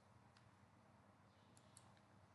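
Near silence: faint room tone with a few soft computer-mouse clicks, one about half a second in and a quick pair near the end.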